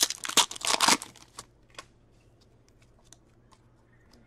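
Hockey trading cards being flipped and slid through by hand: a quick run of crisp card rustling and clicks in the first second, then a few faint ticks as the handling eases off.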